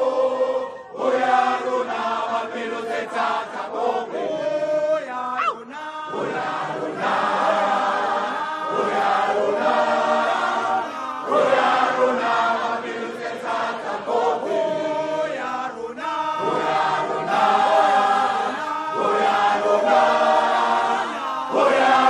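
Recorded choral film-soundtrack music: a choir singing a chant-like song, with brief breaks between phrases about a second in and near six seconds in.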